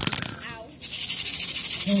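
Close handling noise from a phone being moved against clothing: a sharp knock at the start, then dense rustling about a second in.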